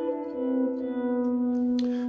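Stratocaster-style electric guitar with two notes ringing together. A new lower note is plucked about a third of a second in and left to sustain.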